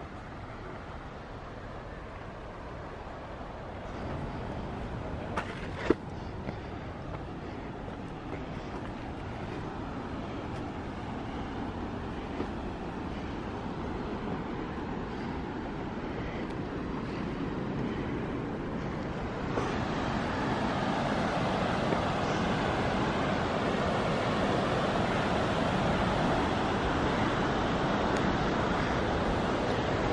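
Steady rush of the Mekong River's rapids, growing louder through the stretch and stepping up about two-thirds of the way in. A single sharp click comes about six seconds in.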